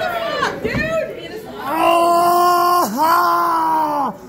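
A person's voice yelling in two long, held, steady-pitched cries of about a second each in the second half, louder than the shorter calls and shouts heard before them.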